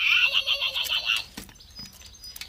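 Hasbro Furby toy giving a high-pitched warbling trill for about a second, then a sharp click.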